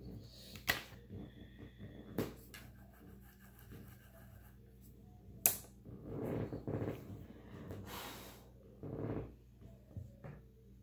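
Makeup things being handled: a few sharp clicks and taps, with soft rustling and breaths, over a faint steady low hum.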